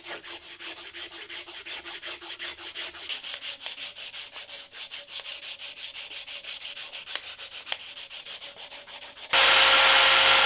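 A strip of sandpaper pulled back and forth, shoeshine-style, across a wooden knife handle, giving quick, even sanding strokes. Near the end it cuts suddenly to the much louder, steady running of a powered buffing wheel used for polishing the blade.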